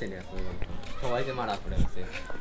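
People talking; the words are not made out.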